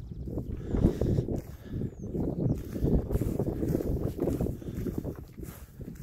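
Wind buffeting the microphone on an exposed hilltop: an irregular, gusty low rumble.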